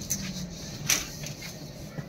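Quiet underground train carriage background: a faint steady low hum, with one sharp short click about a second in and a couple of fainter ticks.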